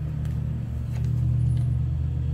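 A steady low rumble, with a couple of faint clicks, one at the start and one about a second in.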